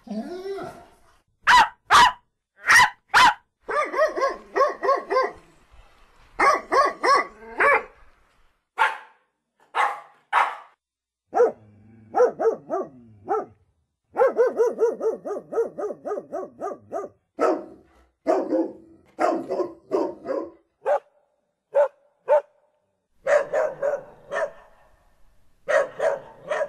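Angry dog barking over and over. Four sharp single barks come in quick succession near the start, then long runs of rapid, rattling barks broken by short pauses.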